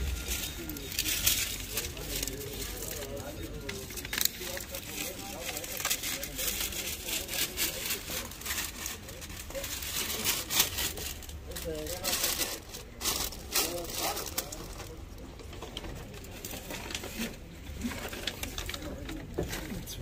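Background voices and market bustle, with frequent short clicks and rustles of handling.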